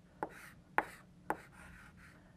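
Chalk writing on a blackboard: three sharp taps about half a second apart as the chalk strikes the board at each stroke, with faint scraping between them.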